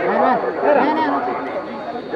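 Spectators' chatter: several voices talking and calling out at once, overlapping so that no words stand out.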